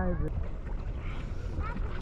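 Wind buffeting the microphone and water sloshing around a small inflatable boat being paddled, as a steady rough noise, with a short voice cutting off just as it begins.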